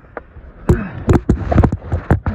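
Handling noise on a phone's microphone: a quick, irregular run of loud knocks and rubbing as the phone is moved against a wet nylon jacket, starting about two-thirds of a second in.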